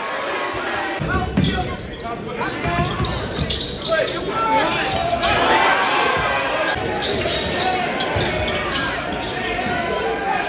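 Live basketball game sound in a large gym: a ball bouncing on the hardwood court and indistinct voices of players and crowd. Short high squeaks come between about two and four seconds in, typical of sneakers on the court.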